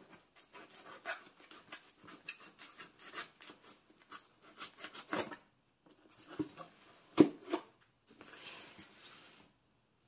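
Scissors cutting and scraping along packing tape on a cardboard box: a quick run of small clicks and crackles for about five seconds, a sharp knock about seven seconds in, then a short scraping rub near the end.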